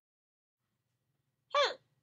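Silence, then a single short, high-pitched vocal squeak that falls in pitch, about a second and a half in.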